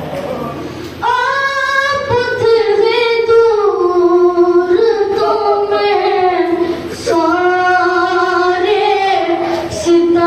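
A boy's voice chanting pesh-khwani devotional verse unaccompanied into a microphone, in long held, gliding melodic phrases. A new phrase begins about a second in and another after a short breath about seven seconds in.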